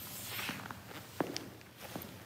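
Footsteps on a hardwood floor: several distinct steps as a person walks away, the sharpest about a second in.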